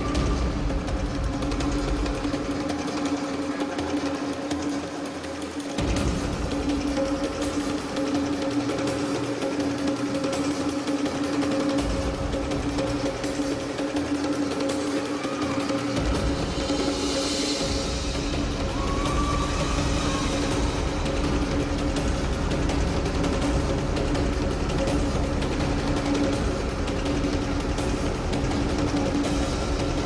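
Instrumental music for a synchronized swimming routine, played over the pool's loudspeakers: a steady sustained drone with a deep bass beat that drops out for a few seconds a few times and comes back.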